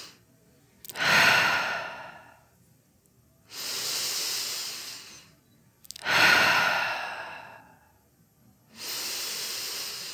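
A woman breathing slowly and deeply close to a headset microphone. Long hissing inhales alternate with louder exhales that fade out over a second or so, about two full breaths in all.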